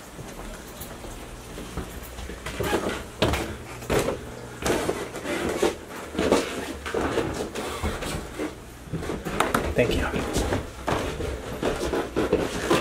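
Footsteps climbing an indoor staircase: a regular series of thuds starting a few seconds in, with voices talking underneath.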